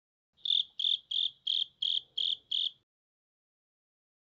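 Cricket chirping: seven short, evenly spaced chirps, about three a second, that stop about three seconds in.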